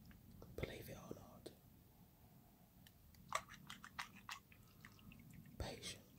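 Faint, scattered small clicks and crackles of fingernails and a cuticle tool working at soaked nails to loosen them, close-miked. The clicks bunch together about three to four seconds in and again near the end.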